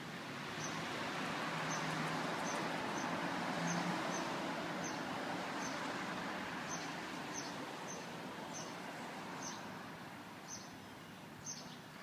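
A small bird chirping over and over, short high chirps coming about once or twice a second, over a broad rush of outdoor background noise that swells in the middle and fades toward the end.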